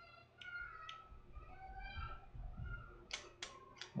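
Faint, high-pitched children's voices from another room, several short gliding calls. A few sharp clicks come near the end.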